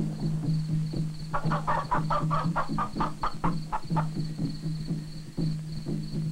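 Film soundtrack music with a steady low drone and a quick run of about a dozen notes between about one and four seconds in, over a faint high chirping that pulses about four times a second.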